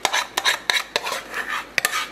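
A utensil scraping and clinking against a saucepan as a thick flour-and-milk sauce is scraped out into a slow cooker, with a series of short scrapes and several sharp clinks.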